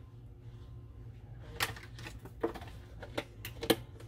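Sharp clicks and pops at a stovetop pot of boiling peas, about five of them at irregular intervals, the loudest near the end, over a steady low hum.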